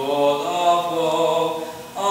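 A teenage boy singing a traditional folk song unaccompanied, holding long notes that step between pitches. The voice fades briefly near the end before the next phrase.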